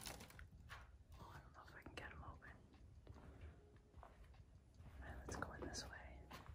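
Near silence, with faint whispered voice sounds about two seconds in and again near the end.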